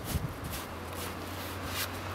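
Push broom sweeping snow, a few short brushing strokes over a low steady hum.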